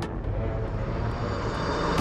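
Film sound effect: a rumbling whoosh that swells and peaks near the end, then breaks off at a sharp hit, over the low drone of the score.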